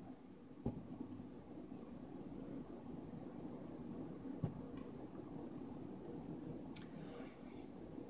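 Quiet room tone while a mouthful of soft almond-milk vegan cheese is chewed with the mouth closed. There are a few faint mouth clicks, one just before a second in and a sharper one a little past halfway.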